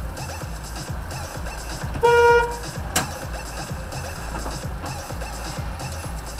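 A car horn sounds one short steady blast, about half a second long, about two seconds in, over music with a steady beat. A sharp click follows about a second later.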